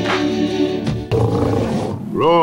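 Choral soundtrack music that breaks off about a second in, giving way to a lion's roar.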